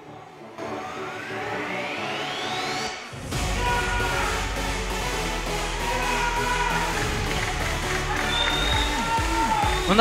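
Electronic music: a rising sweep climbs for about two and a half seconds, then drops about three seconds in into a louder, bass-heavy passage with held synth notes.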